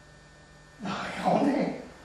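Steady electrical mains hum on the recording. About a second in, a brief louder sound lasting about a second rises over it.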